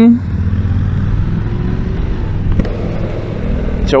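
Honda NC750X's 745 cc parallel-twin engine running steadily under way, with wind rushing over the microphone.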